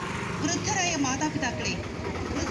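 A motor scooter's engine running as it passes close by, under a voice reciting a pledge.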